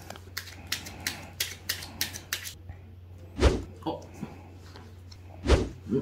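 A run of about eight sharp clicks, roughly three a second, from small plastic hwatu cards being handled and laid down on a blanket, followed by two heavy thumps about two seconds apart with a couple of lighter knocks between them.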